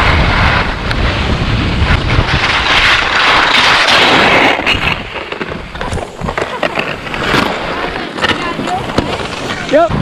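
Skis scraping over packed snow on a downhill run, with wind buffeting an action camera's microphone; about halfway through it drops quieter, with scattered knocks.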